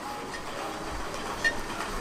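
Steady background noise of a near-empty indoor shopping mall, with a sharp click about one and a half seconds in.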